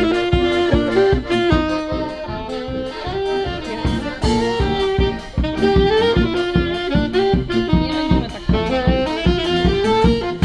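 Accordion and brass band with a tuba playing a lively instrumental folk tune over a steady oom-pah bass beat.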